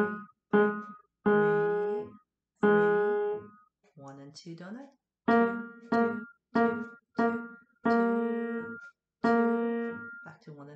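Piano notes struck one at a time with the right hand's third finger on the black keys, about ten slow, unevenly spaced repeated notes, each ringing and fading before the next. It is a beginner firm-fingertip exercise. A short spoken word comes about four seconds in.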